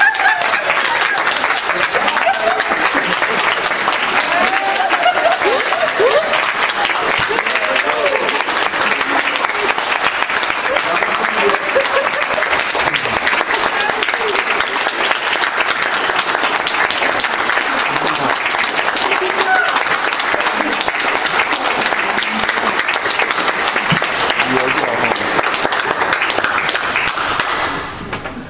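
A church congregation applauding steadily for a long stretch, with voices calling out over the clapping in the first few seconds. The applause dies away near the end.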